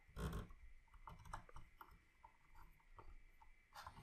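Faint small clicks and taps of hard plastic Nendoroid figure parts being handled as an arm is worked onto the figure, with one louder brief handling noise just after the start.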